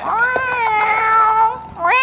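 A man imitating a cat with his voice: a long, drawn-out meow held on one steady pitch for over a second, then a second meow rising in near the end.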